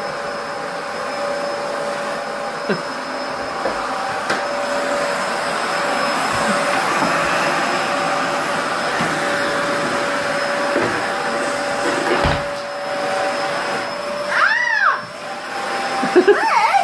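Canister vacuum cleaner running steadily, its motor giving a constant hum with a steady whine.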